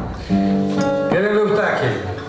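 Acoustic guitar chord strummed and left ringing, with a man's voice heard over it about a second in.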